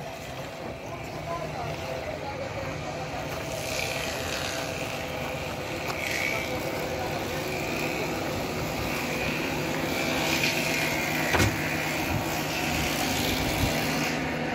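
Steady low hum of running machinery with faint distant voices, and one sharp knock about eleven seconds in.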